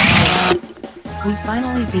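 Cartoon video audio played over a video call: a loud, noisy burst cuts off about half a second in, then music with a voice.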